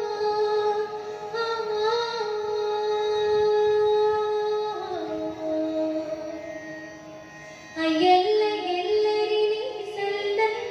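A female vocalist singing a slow Carnatic-style melody in long held notes. The line steps down in pitch about five seconds in, goes quieter, then comes back louder and higher about eight seconds in.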